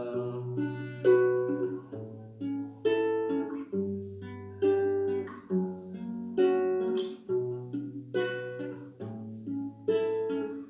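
Nylon-string classical guitar played fingerstyle, no singing: a low bass note under picked chord tones, the chord changing about every two seconds.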